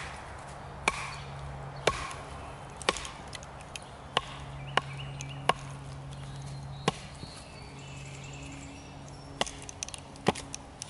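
Sharp wooden knocks as a branch used as a baton strikes the spine of a Ka-Bar Becker BK2 knife, driving its thick 1095 high-carbon steel blade into an upright log. About eight blows come at uneven intervals of roughly a second.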